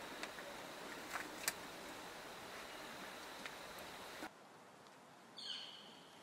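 Faint outdoor field ambience, a steady hiss with a few soft clicks, that cuts off suddenly about four seconds in. A short bird call sounds near the end.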